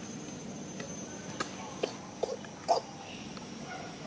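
Pig-tailed macaque giving four short, sharp calls about half a second apart, starting a little over a second in, the last the loudest.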